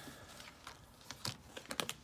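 Tarot cards being handled and shuffled: a scatter of light, quick clicks and taps, thickest a little before the end.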